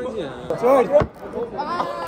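Men's voices talking over one another, with a single sharp thump about a second in.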